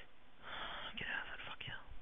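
A man whispering a few words under his breath, breathy and hard to make out.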